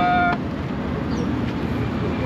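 Car engine idling close by with road traffic behind it, a steady low rumble, after a brief spoken word at the very start.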